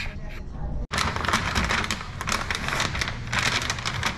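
A large sheet of paint protection film crinkling and crackling as it is handled over a wet car hood, starting after a brief cut-out about a second in.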